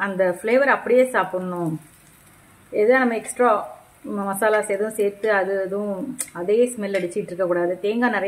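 Someone talking in short phrases over the faint sizzle of raw banana slices shallow-frying in oil in an iron pan, with small ticks and crackles from the oil.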